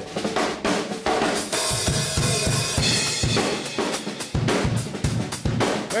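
Drum kit played solo in a quick, busy fill: rapid snare strokes with bass drum and cymbals, answering a request for a drum roll.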